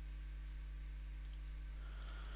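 Computer mouse clicked twice in quick succession about a second in, over a steady low electrical hum.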